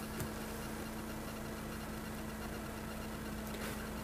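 Mercedes-Benz CLK (W208) engine idling, heard as a steady low hum.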